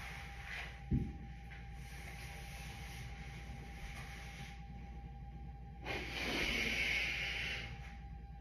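A tearful woman's long, breathy exhale, like a heavy sigh, lasting over a second near the end, over a faint steady hum. A dull thump about a second in.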